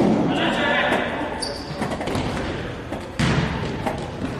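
Indoor football match in an echoing sports hall: players calling out, with thuds of the ball being kicked or bouncing. There are two sudden loud moments, one at the start and one about three seconds in.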